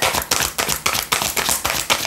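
A tarot deck being shuffled by hand: a rapid, irregular run of soft card clicks and slaps.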